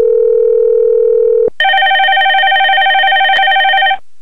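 X-Lite softphone's electronic ringing tones: a lower warbling tone, then about a second and a half in a short break and a higher, brighter warbling tone.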